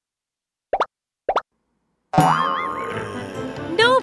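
Two short, rising cartoon plop sound effects about half a second apart, then, about two seconds in, a loud musical sting with a wavering high tone.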